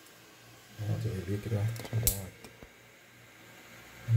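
A man's brief low murmur for about a second, followed by a short sharp hiss-like click, then quiet room tone.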